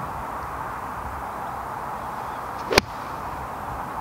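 A nine-iron striking a golf ball off the turf: one sharp, brief click about three-quarters of the way through, over steady background hiss.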